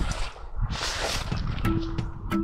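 Low rumbling wind noise on the microphone, with a louder hiss about a second in. Near the end, background music with a plucked guitar comes in.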